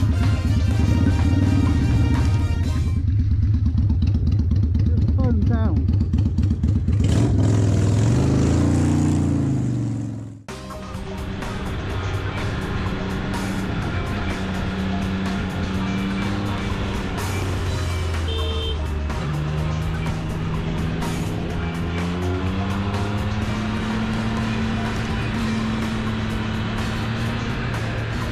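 Motorcycle engines heard from the riders' cameras. First a cruiser runs in town traffic with a low pulsing engine note that revs up just before a sudden cut about ten seconds in. Then a sport bike runs along a winding road, its engine note rising in pitch twice in the second half.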